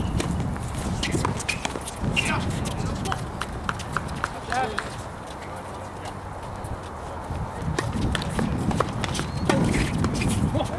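Between points on an outdoor hard tennis court: footsteps and scattered sharp knocks of tennis balls and shoes on the court surface, with indistinct voices.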